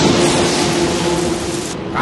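A loud rushing splash of a person plunging into a pool of water, cutting off abruptly near the end, over a steady held musical tone.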